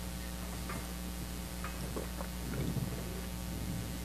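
Steady low electrical hum of the room with a few faint, light clicks and knocks from objects being handled at the altar.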